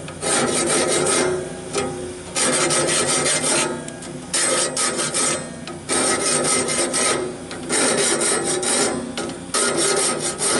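A hand file rasping back and forth across the teeth of a sawmill bandsaw blade, sharpening the tooth tips. The strokes each last about a second and come about every second and a half.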